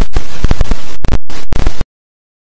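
Very loud digital glitch sound effect: harsh static chopped by brief dropouts, cutting off abruptly near the end.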